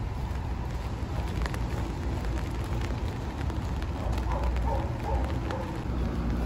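Rain falling on an open umbrella overhead, scattered drops ticking over a steady low rumble.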